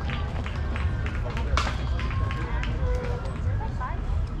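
Faint voices of players calling across an open ball field over a steady low rumble of wind on the microphone, with scattered small clicks and one sharp click about one and a half seconds in.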